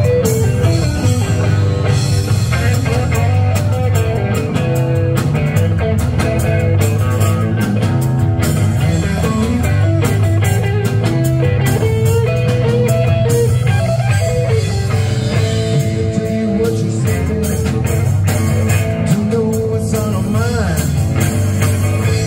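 Live blues-rock band playing an instrumental passage: two electric guitars, one a hollow-body with a Bigsby vibrato and one a Stratocaster-style solid-body, over bass and drums, with a bent guitar note near the end.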